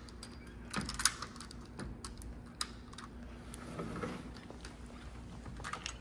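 Sliding screen door handled and opened, a scattered run of small clicks and taps over a low steady hum.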